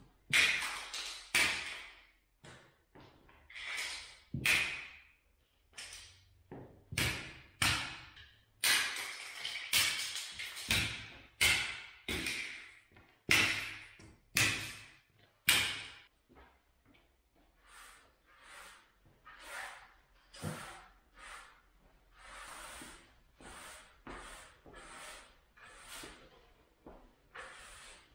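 Rubber mallet knocking plastic tile-levelling clips off a newly laid tile floor: a fast run of sharp snaps and clatters as the clips break off and skitter across the tiles. Past the halfway mark this gives way to softer, regular brushing strokes of a broom sweeping up the broken clips.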